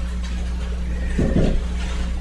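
Steady low hum over a faint even hiss, with one brief soft vocal sound a little past the middle.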